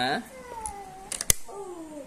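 A cat meowing twice in long, gliding calls, with a single sharp click a little past the middle, the loudest sound here.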